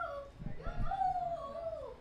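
A young person's high voice drawing out a word in a long sing-song, its pitch rising and then falling over about a second and a half.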